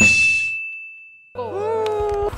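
A single bright chime sound effect: a sharp ding that rings on one high note and fades away over about a second. About a second and a half in, the scene's voices come back in.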